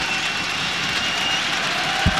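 Arena crowd noise from a basketball crowd, a steady hubbub, with a faint high thin tone held for about a second near the start.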